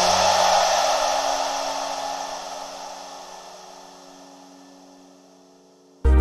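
The tail of an instrumental track: a hissing wash of synth sound over a few held low notes, fading out steadily. The next track comes in suddenly at the very end, loud and bass-heavy.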